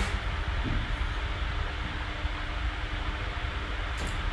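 Steady background noise of a small room picked up by the microphone: a low rumble and hiss with a faint steady hum, and no distinct events.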